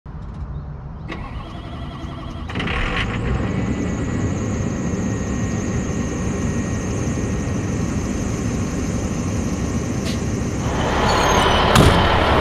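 JLTV armored truck's turbodiesel V8 starting about two and a half seconds in and then idling steadily. Near the end the engine noise grows louder, with a few sharp clicks.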